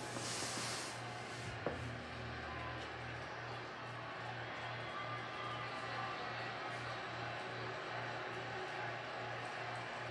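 College baseball broadcast playing from a TV: stadium crowd noise with a steady low pulsing beat, about three pulses a second. A single sharp click comes a little under two seconds in.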